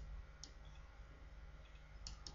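Near silence: room tone, with a couple of faint clicks from computer input in the first half-second.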